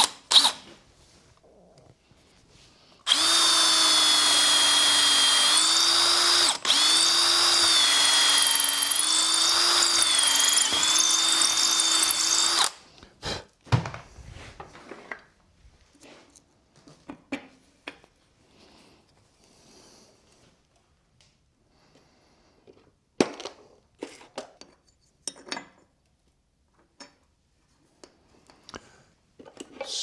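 Cordless drill boring a hole into wood, starting about three seconds in and running steadily for about ten seconds with a brief stop partway through. Its pitch wavers slightly as the bit takes load. Scattered faint clicks and knocks of handling follow.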